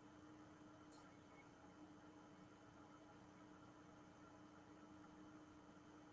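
Near silence: faint room tone with a low steady hum and a single faint click about a second in.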